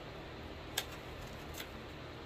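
Two small handling clicks over steady room noise: a sharp one just under a second in and a softer one near the end.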